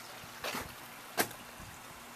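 Steady faint background hiss of an outdoor yard, broken by two brief sharp sounds, one about half a second in and another a little over a second in.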